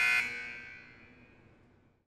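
Electronic buzzer of a debate countdown timer, a steady high-pitched buzz that stops just after the start, its echo fading away over about a second: the signal that the speaker's time is up.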